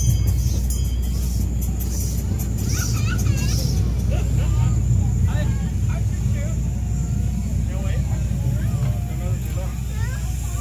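Steady low rumble of a small open ride car rolling along, with faint voices in the background through the middle of the stretch.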